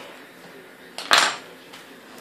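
Kitchen knife set down on the table: one short clatter about a second in, just after a cake strip has been sliced off.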